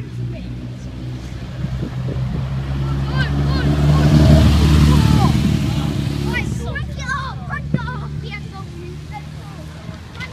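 A sports car's engine passing close by. Its low exhaust note grows to its loudest about halfway through, then fades as the car drives away.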